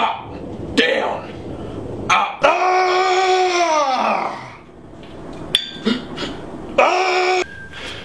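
A man's long drawn-out yell while lifting a dumbbell, falling in pitch at its end. A shorter shout comes near the end, with a few sharp knocks between.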